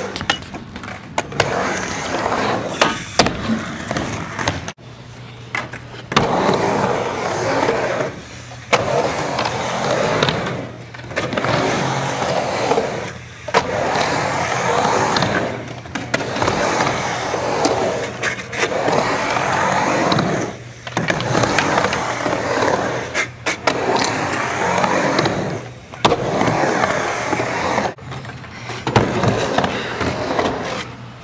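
Skateboard wheels rolling on ramps. The rolling noise swells and fades every couple of seconds as the rider goes back and forth across the transitions, with a few sharp clacks of the board.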